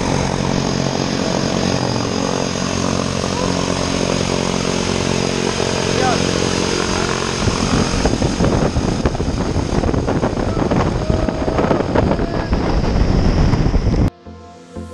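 Turboprop jump plane's engines running steadily, a constant high turbine whine over a low propeller drone. From about halfway, rough gusty buffeting from the propeller wash hits the microphone and the sound grows louder as the plane's door is reached.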